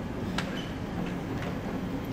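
Low, steady background noise of a large room with a faint murmur, broken by two small sharp clicks about a second apart.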